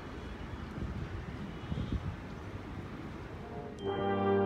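Outdoor background ambience: a low, uneven rumble with a fainter hiss above it. Brass music of the outro starts abruptly just before the end.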